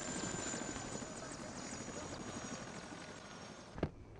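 Helicopter flying, its rotor beating rapidly under a thin high turbine whine, slowly fading. A sharp knock comes near the end.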